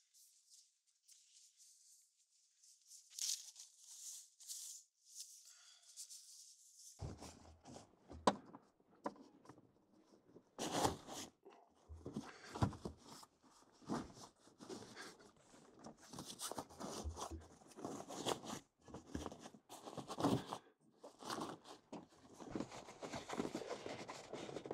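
Rooftop tent fabric rustling and scraping as it is tucked by hand into an aluminum hard shell, with scattered light knocks and one sharper knock. It starts faint after a few quiet seconds and gets busier about seven seconds in.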